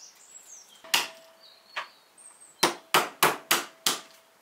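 Hammer cracking walnuts on a wooden board: two separate strikes, then a quick run of five, about three a second.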